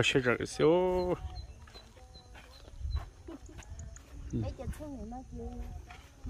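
A goat bleating: one long wavering bleat about a second in.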